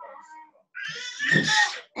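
A cat meowing once, a single call of about a second that is louder than the voices around it, picked up by a participant's microphone.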